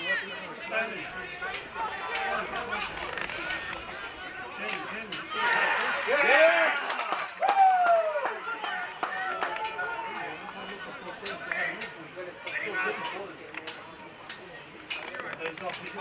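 Shouting and calling voices of rugby league players and sideline spectators during open play, with a burst of loud yells about six seconds in. Scattered sharp knocks run throughout.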